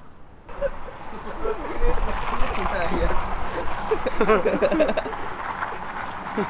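Many people talking at once in an indistinct babble of voices, starting abruptly about half a second in.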